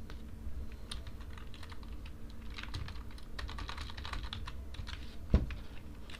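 Typing on a computer keyboard: quick, irregular keystrokes, with one louder keystroke about five seconds in.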